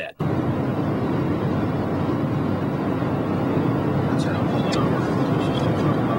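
Steady road and engine noise inside a car cruising on a highway, a constant low rumble with a few faint clicks in the second half.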